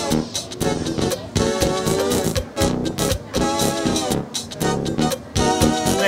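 Synthesizer music played back from a multitrack MIDI sequence, with chord and bass parts in short rhythmic notes. The pitches shift as the sequence is transposed live from a MIDI keyboard.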